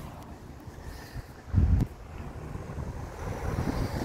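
Wind buffeting the microphone as a low rumble, with one stronger gust about one and a half seconds in.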